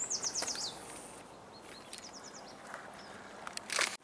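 A small songbird calling in the brush: a quick series of high chirps that step down in pitch, then a shorter high series about two seconds in, over faint outdoor background noise. A short rustle comes near the end.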